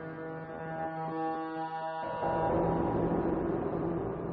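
Serge Paperface modular synthesizer playing a sustained drone of steady, horn-like pitched tones. About two seconds in the chord shifts and a noisier, grainier texture swells in over a held low tone.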